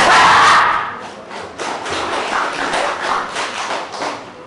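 A jumping kick smacks a handheld taekwondo kick paddle with a shout, as one sudden loud burst at the start. From about a second and a half in comes a couple of seconds of irregular knocks and shuffling.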